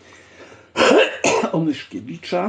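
A man clearing his throat, a loud rough burst about three-quarters of a second in, then going on to speak.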